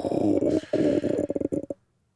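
A man's drawn-out wordless vocal sound, held on one pitch, with a brief break partway through. It breaks up into a stutter and stops shortly before the end.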